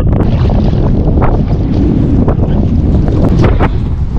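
Loud wind buffeting on the microphone over the rush of water along a Yamaha jet ski's hull and the running of the craft, with a few brief splashes or knocks.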